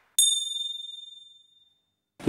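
A single high ding, like a small bell or metal chime struck once, ringing out and fading away over about a second.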